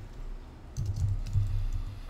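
Computer keyboard being typed on: a short run of light keystrokes, mostly about a second in.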